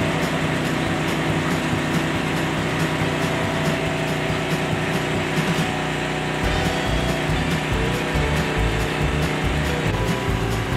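Engine-driven machinery running steadily, with a constant hum under a rough, saw-like noise. A low pulsing joins about six seconds in.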